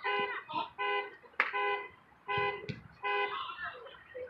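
A horn sounding in about five short, evenly spaced honks, with voices faintly between them.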